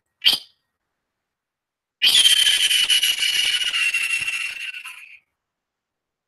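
A short high click just after the start, then, about two seconds in, a hissing high whistle-like tone lasting about three seconds, sinking slightly in pitch and fading out. The sound is cut off into dead silence on either side.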